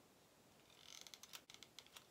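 Faint crinkling rustle with several sharp clicks in the second half, from hands handling sheer chiffon fabric pieces and a hot glue gun.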